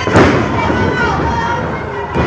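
A wrestler's body slammed onto the ring mat: one loud, sharp slam about a quarter-second in, over continuous crowd voices.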